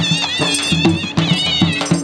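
Shehnai playing a wavering, ornamented melody over a steady dhol drum beat: traditional Punjabi folk music accompanying a horse dance.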